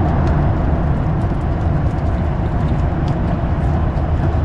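Steady, deep cabin noise of a Boeing 737-800 in flight: engine and airflow rumble, unchanging throughout.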